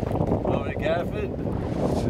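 Strong wind buffeting the microphone on an open boat deck: a dense, uneven low rumble, with a faint voice briefly in the middle.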